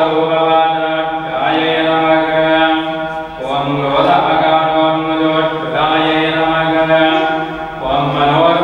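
A male voice chanting Hindu mantras in a steady, sung monotone, phrase after phrase about every two seconds, as part of a temple puja.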